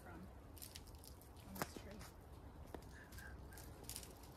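Quiet woodland ambience: a faint low rumble with a few sharp faint clicks, the loudest about a second and a half in.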